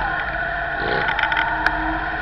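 Steady, muffled engine hum of slow traffic, a car and the motorcycles just ahead, heard from inside the car's cabin, with a sharp click near the end.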